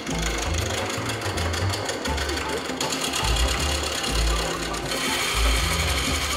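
Wood lathe spinning an out-of-round workpiece while a hand-held turning chisel cuts it, a fast, even, machine-like rattle as the chisel chatters against the corners to round them off.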